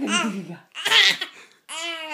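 A three-month-old baby laughing out loud in three short bursts, the middle one the loudest.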